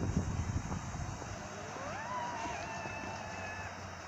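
Zip-wire trolley running down its steel cable with a rider: a low rumble as it sets off, then its pulley wheels give a whine that rises as it picks up speed and holds steady before fading near the end.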